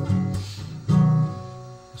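Acoustic guitar strummed through the chord changes of the song's G, Em, C, D progression: three strums in the first second, the last chord left ringing and fading away.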